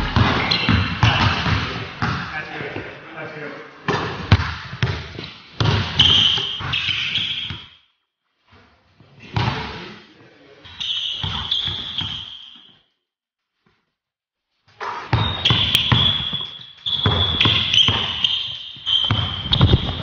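A basketball dribbled hard on a hardwood gym floor in quick runs of bounces, with short high sneaker squeaks as the players cut. The sound drops out twice for a moment.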